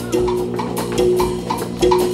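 Live band accompaniment: sustained held notes in the middle range, one of them re-sounding about a second in and again near the end, over light drum and percussion strokes.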